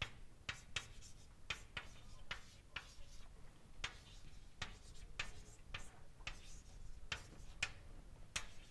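Chalk writing on a blackboard: a faint, irregular run of short taps and scratches, about two a second, as symbols are written out.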